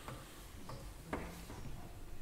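Quiet room tone with a low steady hum and a few faint clicks, the sharpest a soft knock about a second in.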